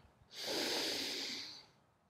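A man's single audible breath, a soft hiss lasting about a second, taken while he holds a Warrior Two yoga pose.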